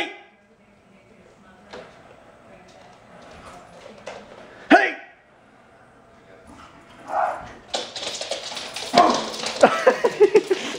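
Small dog barking in short, sharp barks: one loud bark about halfway through, then a busier run of barks and yips near the end, with people laughing.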